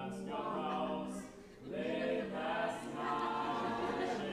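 A student vocal quartet of two young women and two young men singing a cappella in harmony, holding long notes, with a brief breath break about one and a half seconds in.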